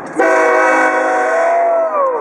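Locomotive air horn sounding one loud blast: a chord of several steady tones that starts abruptly and holds for nearly two seconds.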